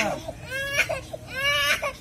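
A small child crying in two short wails while held down for a head shave with a razor.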